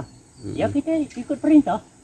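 A man's voice speaking a few short phrases, with a faint high insect trill behind it at the start.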